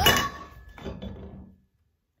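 A phone knocked over, clattering down onto a hard surface with a loud clink that rings briefly, then a smaller knock about a second in.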